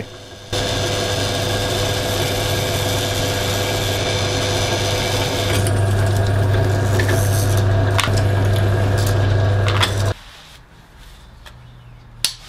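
Bench pillar drill running with a steady motor hum while its bit cuts into a stack of steel strips, with a few sharp clicks in the second half. The sound starts about half a second in and cuts off about ten seconds in.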